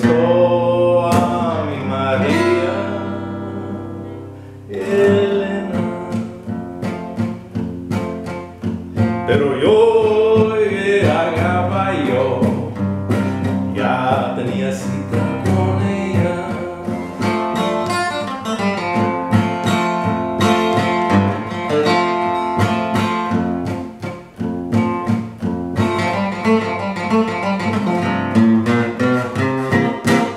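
Acoustic guitar played solo, picked and strummed at a steady pace, with a man's voice singing over it in parts.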